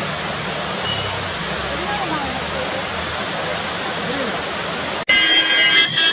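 Steady rush of a stream pouring over rocks below a waterfall, with faint voices of people in the water. About five seconds in it cuts off suddenly and a shrill steady tone starts.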